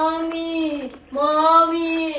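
A young voice singing two long held notes without words, each falling away in pitch at its end, with a short break about a second in.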